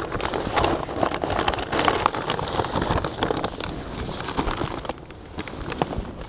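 Plastic cement and feed sacks rustling and crinkling as a man pushes through them and crawls into a small pallet-built hut; the dense crackling thins out about five seconds in.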